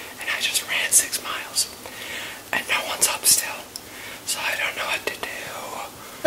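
A young man whispering close to the microphone in short, breathy phrases with sharp hissing s-sounds.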